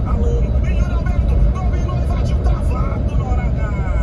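Steady low rumble of tyres and engine heard inside a car cruising on a highway, with a voice, likely from the car radio's football broadcast, talking in the background.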